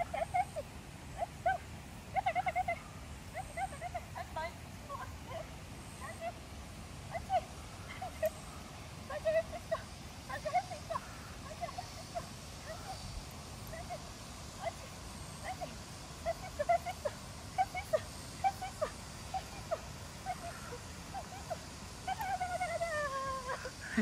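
A small dog yapping in short, high-pitched yips that come irregularly, often in quick clusters of two or three, while it runs the jump course.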